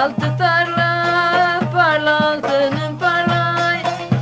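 Aegean Turkish folk music: a wavering, ornamented melody over a held low note, with regular drum strikes.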